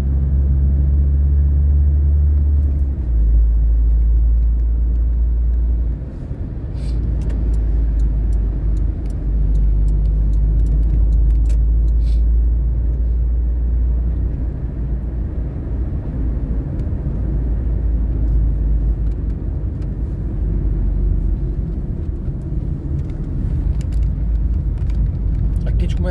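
Low, steady engine and road rumble heard inside a moving car's cabin. The note shifts about three seconds in and dips briefly at about six seconds, as the car changes speed.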